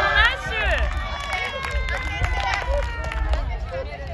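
A small group of women cheering and shouting in excitement as a penalty kick goes in: a burst of high-pitched yells at the start, then one long drawn-out cheer.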